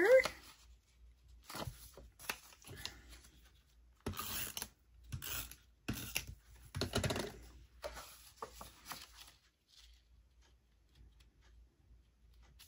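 Sheets of patterned paper being handled and pressed into place on a cutting mat: irregular rustles and scrapes, dying away near the end.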